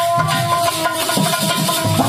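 Instrumental passage of a folk bhajan: a harmonium plays held melody notes over a steady dholak beat.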